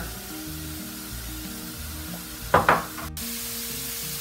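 Ground turkey sizzling as it fries in lard in a cast-iron skillet, a steady hiss under background music with held notes. A short louder noise comes about two and a half seconds in. The sound drops out for an instant a little after three seconds.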